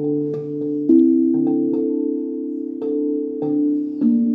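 Steel tongue drum tuned to a D Kurd scale, its tongues struck one at a time with rubber-tipped mallets: clear single notes that ring on and overlap in a slow melody, with one stronger strike about a second in.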